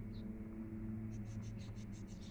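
Pencil writing on workbook paper: faint quick scratching strokes that begin about a second in, over a steady low hum.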